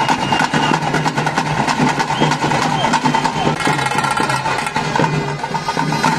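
Live festival drumming for a tiger dance: a fast, steady beat of drum strokes with a held droning wind tone and voices over it.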